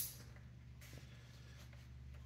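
Near silence: room tone with a steady low hum and one faint click about a second in.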